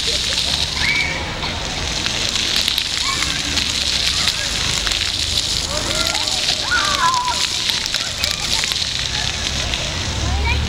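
Many vertical jets of a ground-level floor fountain spraying and splashing down onto wet pavement: a steady, dense hiss of falling water.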